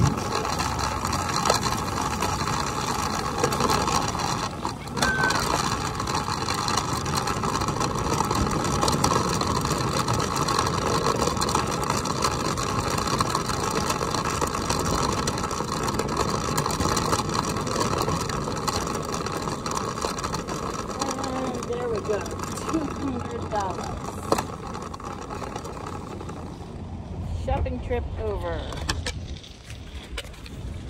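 Shopping cart and manual wheelchair wheels rolling over parking-lot asphalt: a steady rattling rumble that quietens near the end.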